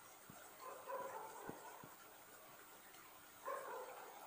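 Marker pen writing on a whiteboard: faint scratching and small taps of the felt tip, with two slightly louder squeaky strokes, one about a second in and one near the end.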